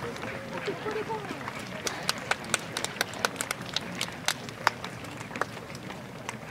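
Open-air youth soccer match: a player's shout in the first second, then about three seconds of irregular sharp claps, several a second, over the outdoor noise of the ground.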